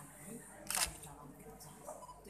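A single sharp camera shutter click about three-quarters of a second in, over faint voices.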